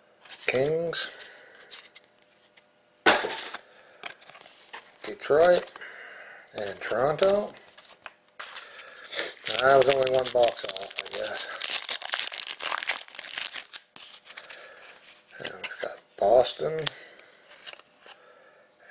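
A foil trading-card pack being torn open and crinkled: a dense, crackly tearing noise that starts a little before the middle and lasts about four seconds. Short bits of voice come and go around it.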